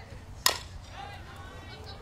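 A softball bat striking a pitched ball: one sharp hit about half a second in, putting the ball in play.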